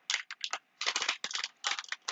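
Superzings blind-bag packet being torn open and crinkled by hand: a quick, irregular run of crackling rustles.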